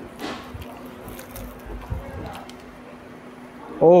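Hands tearing apart a flaky, layered paratha (porota): faint soft rustling and crackling over a steady low hum. A man's voice starts just before the end.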